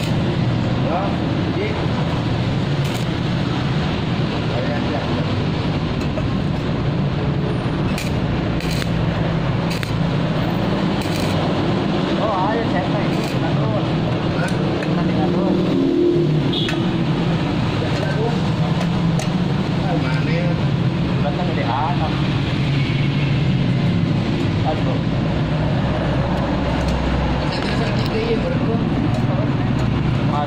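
Arc welding thin sheet steel with a stick electrode: a steady crackle from the arc over a continuous low hum, with voices faint in the background.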